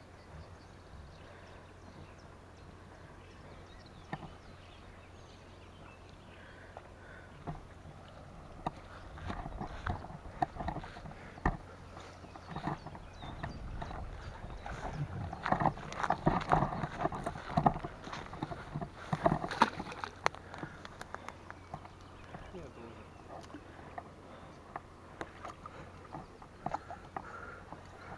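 Irregular rustling and knocks from an angler moving on a grassy bank and handling a landing net while playing a hooked carp. The sound is quiet at first and busier in the middle.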